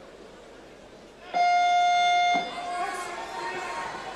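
Electronic buzzer at the boxing ring sounding once for about a second, a loud steady tone that cuts off sharply, signalling the start of the first round. A murmur of voices in the hall follows.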